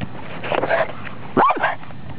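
Boston Terrier barking: a softer sound about half a second in, then one loud bark that rises and falls in pitch about a second and a half in.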